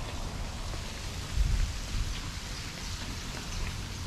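Steady outdoor noise with a low rumble about a second and a half in, typical of wind on a handheld camera's microphone.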